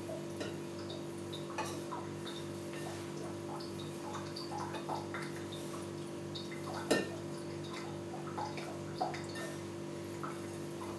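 Dried lavender being handled and packed into a copper still's column: soft rustles and small clicks, with one sharper click about seven seconds in, over a steady hum.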